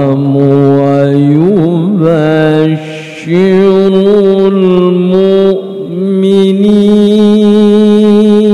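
A male qari reciting the Quran in the melodic tilawah style, amplified through a microphone. He holds long, sustained notes with ornamented wavering turns, pausing for breath about three seconds in and again a little before six seconds.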